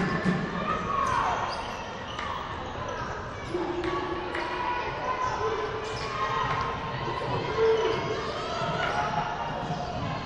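A basketball being dribbled on a hardwood gym court, repeated bounces, with voices calling out across the hall.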